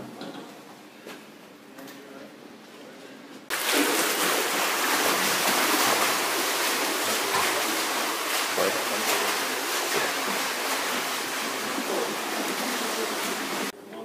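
Swimmers splashing in an indoor pool: a steady, loud wash of splashing water that cuts in abruptly about three and a half seconds in and stops just before the end.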